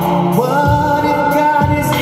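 Live pop ballad played by a string ensemble with a backing track. About half a second in, a male voice slides up into one long wordless note held over sustained chords and a bass line.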